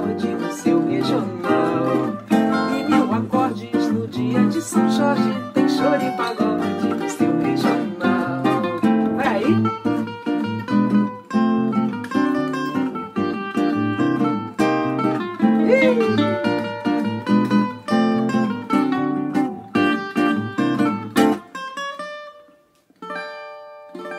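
Cavaquinho and nylon-string acoustic guitar playing a choro-samba instrumental passage together in a brisk, evenly strummed rhythm. The strumming breaks off near the end and a final chord rings out as the song closes.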